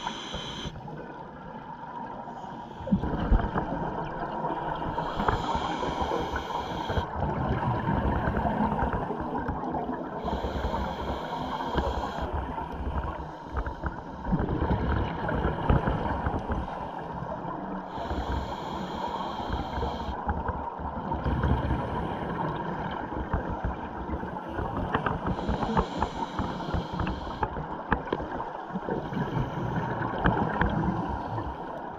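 Underwater scuba breathing: a regulator hiss on each breath, about every six seconds and four times in all, over a steady rumble of exhaled bubbles and water.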